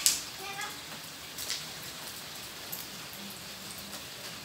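Light patter of water dripping onto a wet tiled yard just after rain, with a sharp splash of feet landing on the wet tiles at the very start.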